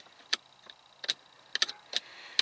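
Plastic power-window rocker switches on a Pontiac G8's centre console clicking as they are pressed, with the car switched off so no window motor runs: about five short, sharp clicks spread through two seconds.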